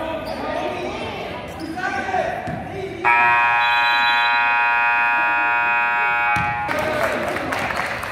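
Gymnasium scoreboard horn sounding one loud, steady buzz for about three and a half seconds as the game clock runs out, ending the period. Before it come voices and a basketball bouncing on the court.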